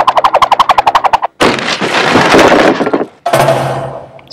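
Music and sound effects from a television commercial: a fast rattling rhythm of about a dozen beats a second, then about a second and a half of hiss-like noise, then a short low tone near the end.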